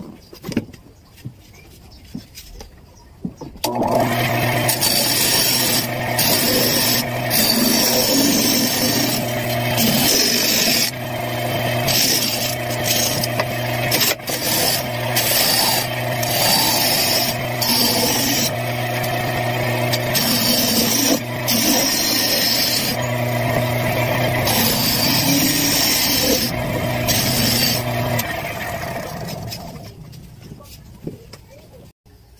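Homemade disc sander starting about four seconds in, with a steady motor hum under rough grinding. The grinding is its disc abrading a plywood piece pressed against it, swelling and easing in repeated passes. It stops near the end.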